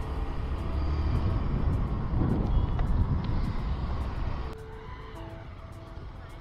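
Riding noise from a two-wheeler: a dense low rumble of engine, wind and road. About four and a half seconds in it drops suddenly to quieter street traffic with a few faint steady tones.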